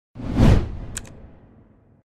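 Animated-logo sound effect: a whoosh that swells up and peaks about half a second in, a short sharp click about a second in, then a tail that fades away.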